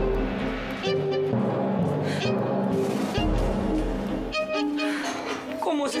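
Dramatic background score of bowed strings holding long notes, with a deep low swell near the start and another about three seconds in.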